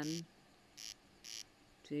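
Cricket chirping in the rice field: two short, buzzy chirps about half a second apart.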